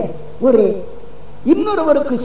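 A man's voice preaching: a short falling word about half a second in, a pause of under a second, then speech resumes near the end.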